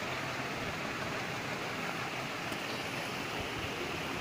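Steady, even hiss-like background noise with no distinct events.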